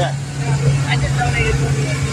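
A steady low hum of an idling vehicle engine, with faint voices over it.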